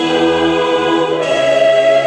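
Choir singing with long held notes, moving to a new chord about a second in.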